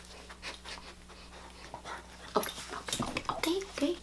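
Small dachshund panting close to the microphone, in quick breaths that get louder in the second half.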